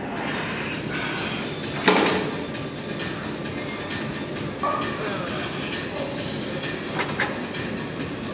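Weight-room background noise, steady and even, with one loud sharp clank about two seconds in. A lighter knock comes near the middle and two small clicks near the end.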